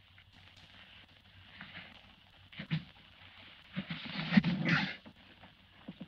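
A man being beaten: blows landing, with his grunts and gasps of pain. A first hit comes about halfway in, and a louder flurry of blows and grunts follows about a second later.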